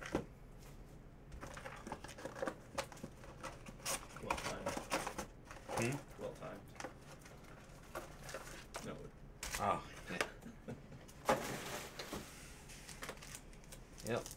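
A cardboard hobby box of 2019 Panini Phoenix Football cards being opened and its foil-wrapped card packs handled: scattered crinkling, rustling and tearing with short clicks, quiet and irregular.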